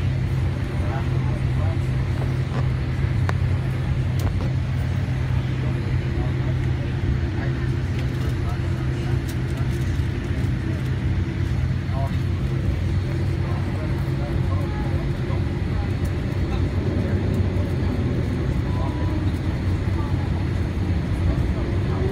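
Boeing 787 cabin noise on the ground: a steady low hum of the jet engines and cabin air. Near the end a rising whine begins as the engines spool up.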